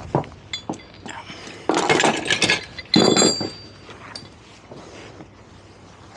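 Metallic clinking and clattering of hard objects being handled: a few sharp clicks, then two louder bursts of clatter with a brief metallic ring about two and three seconds in.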